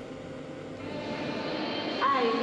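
Steady rushing background noise with a few faint steady tones in it, growing gradually louder.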